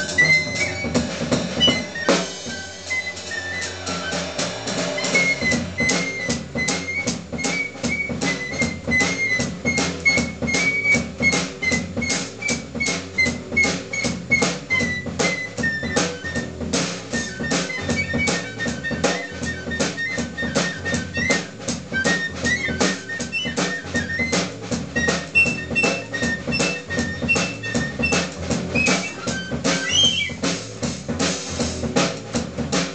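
Live jazz trio: a piccolo plays a high melodic line over fast, steady drum-kit and cymbal playing, with a double bass walking underneath. Near the end the piccolo line climbs higher.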